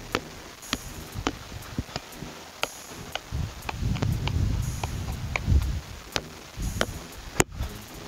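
Soccer ball being juggled, its sharp touches coming about twice a second, with a low rumble through the middle and one louder knock near the end.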